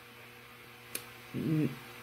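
A faint, low, steady hum in a pause between words, with one sharp click about a second in and a brief murmur of the woman's voice near the end.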